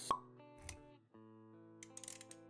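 Logo-intro sound effects over music: a sharp pop just after the start, over held musical chords. There is a short low swell about two-thirds of a second in and a brief drop near one second, then the chords resume with a few light clicks near the end.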